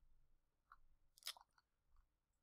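Near silence, broken by one faint, short click a little over a second in.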